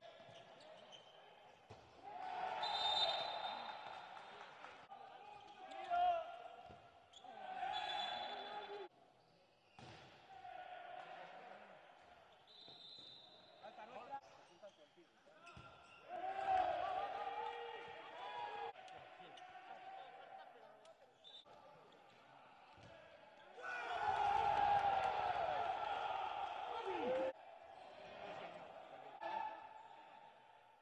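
Handball game sound in an echoing sports hall: the ball bouncing on the court floor, with players shouting and calling out in several loud spells.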